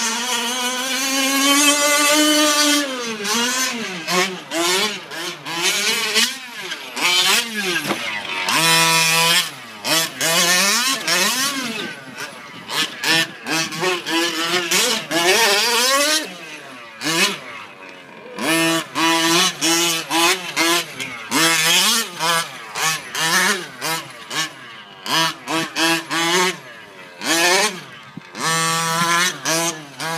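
The small two-stroke petrol engine of a 1/5-scale gas RC short-course truck being driven hard: the throttle is opened and shut again and again, so the pitch climbs and falls and the engine note breaks off every second or two.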